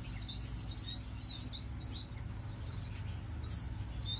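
Small aviary birds chirping: many short, high chirps scattered through the moment, over a steady low background rumble.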